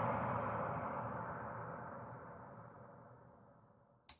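Long ringing tail of a processed sample hit, built from layered recordings of a struck tree, banged metal pots, wood hits and dragged plastic with effects and EQ, fading away steadily until it dies out just before the end.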